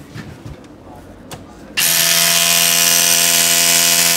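Hilti cordless SDS rotary hammer running with a cone-shaped setting bit, driving an anchor into a concrete block. The tool starts about two seconds in and runs loud and steady.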